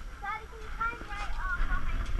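High-pitched voices talking in short bits, over a steady low rumble.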